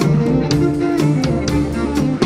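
A live jazz band playing, with drum kit, bass and keyboard, and a violin played on the move; the drums keep a steady beat under sustained low notes.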